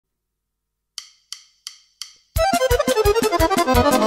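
Four sharp clicks count in the band, about three a second. Then accordion and drums come in together, the accordion running quickly down the scale over steady drum beats.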